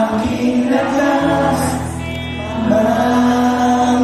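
Live worship music: a band plays while the singer and a large crowd sing together in long, held notes. A bass comes in about a second in.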